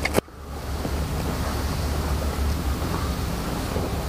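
A single sharp knock as the camera is set down on the mat, then a steady low rumble and hiss of room noise.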